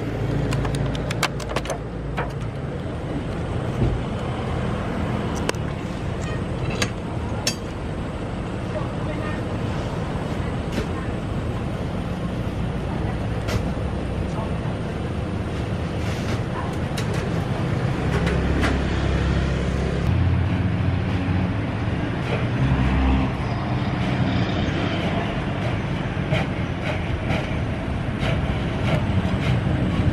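Street traffic, with motorbike and car engines giving a steady low rumble that swells a little past the middle. Through the first several seconds, short plastic clicks and crackles come from a clear clamshell food box being opened.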